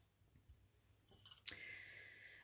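Faint, light clicks of tarot cards being handled, a few in quick succession about a second in, followed by a faint steady high tone.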